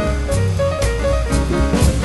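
Swing jazz band playing an instrumental passage, with the drum kit keeping a steady beat of about two strokes a second over bass and pitched instruments.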